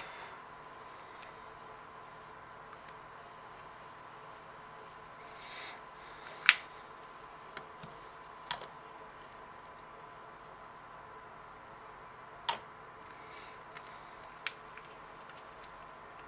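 A few light, sharp clicks and taps of small plastic parts, thin plastic strips and a plexiglass square jig, being set down and pressed into place on a work surface, the loudest about six and a half seconds in. Under them a faint steady high-pitched hum.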